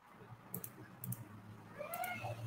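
A few faint clicks, then a brief faint pitched sound near the end that rises and falls.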